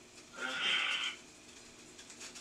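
A man's voice making one short, drawn-out vocal sound lasting under a second, about half a second in, with quiet room tone around it.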